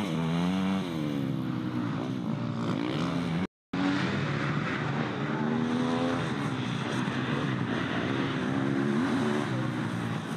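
Off-road racing dirt bike engines revving up and down as they accelerate and shift. The sound cuts out completely for a split second about three and a half seconds in.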